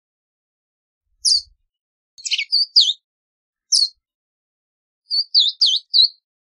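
Verdin calling with short, high, sharp notes: a single call about a second in, a quick run of about four notes just after two seconds, another single call near four seconds, and a run of about four notes near the end.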